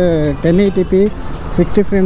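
A person talking continuously, with a short pause just past a second in, over a steady low rumble of road and wind noise.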